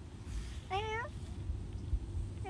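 A toddler's single short, high-pitched vocal sound, rising and then falling in pitch like a meow, about a third of a second long and just under a second in, over a steady low rumble of wind on the microphone.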